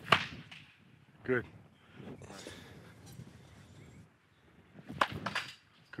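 Baseball bat hitting a ball off a batting tee: a sharp crack right at the start and a second one about five seconds later.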